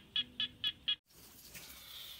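A night animal calling: a run of short, sharp chirps, about four a second, cut off abruptly about a second in, after which only a faint hiss remains.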